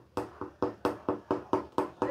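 Wire whisk beating thick mung dal batter in a glass bowl, striking the glass in quick, even strokes about four times a second.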